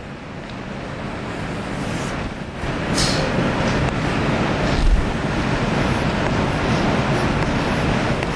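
Steady rumbling noise that grows louder over the first three seconds and then holds, with a few faint taps.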